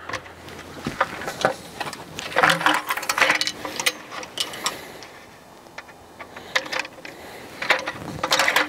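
Clicks and light metallic clatter from a folded metal camping table as its frame-locking pins are worked, in several short bouts with pauses between.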